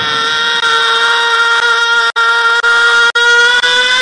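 One long, steady held note with many overtones, drifting slightly upward in pitch, with two very brief breaks about two and three seconds in.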